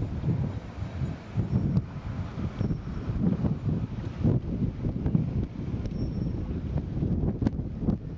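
Wind buffeting the microphone: a gusty low rumble that keeps rising and falling.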